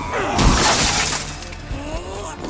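A car window shattering: a hard impact about half a second in, then breaking glass spraying for most of a second. Film music plays under it.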